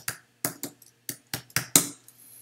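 Computer keyboard keys clicking as a short command is typed, about eight separate keystrokes at an uneven pace. The last, loudest click near the end is the Return key sending the command.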